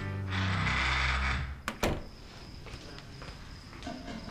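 Background music ends, and a wooden entrance door is pushed shut with two quick clicks of the latch a little under two seconds in.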